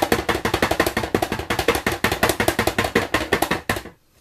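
Chocolate mould full of tempered white chocolate being tapped rapidly against the work surface, about ten knocks a second, to bring air bubbles out of the chocolate. The tapping stops just before the end.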